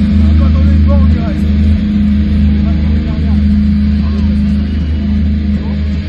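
Live metal band playing loud: a steady, low, distorted drone of down-tuned guitars and bass, with a voice shouting over it.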